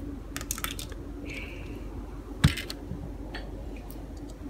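Small hard-plastic clicks of Lego pieces being handled and a Lego minifigure pressed into place in a Lego car: a few light clicks in the first second, then one sharper click about two and a half seconds in.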